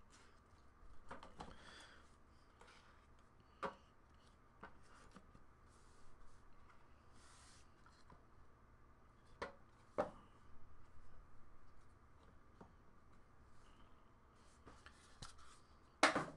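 Faint rustling and a few sharp clicks of a cardboard trading-card box being slit open with a pocket knife and handled, over near silence.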